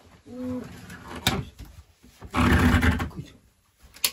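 A man laughing: a short voiced laugh near the start, then a louder, rough burst of laughter a little past halfway, with a sharp knock about a second in.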